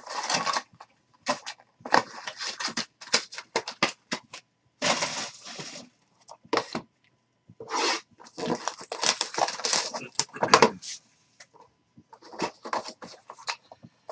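Cardboard trading-card box being handled and opened: irregular scraping and rustling of the lid, flaps and inner tray, in short bursts with brief pauses.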